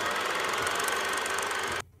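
A steady, fast mechanical rattle, like a small machine running, that cuts off suddenly near the end.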